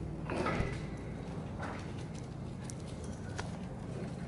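A few light clicks and taps from hands working at the bare cylinder and piston of a two-stroke dirt bike engine, over a steady low hum.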